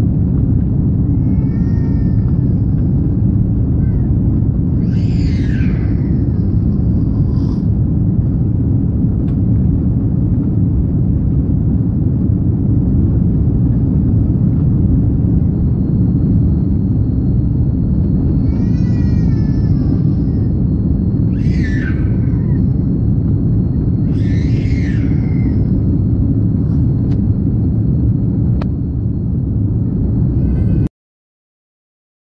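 Steady low rumble of an airliner cabin, its engine and air noise unbroken. Faint high voice-like calls rise above it a few times.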